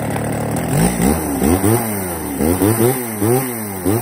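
Echo (Kioritz) CSVE3502G chainsaw's two-stroke engine idling steadily, then blipped on the throttle over and over from about a second in, about two revs a second, its pitch rising and falling with each blip.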